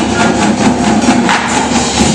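Indoor percussion ensemble playing: marching snare, tenor and bass drums with the front ensemble's mallets and cymbals, a dense run of overlapping drum and cymbal hits.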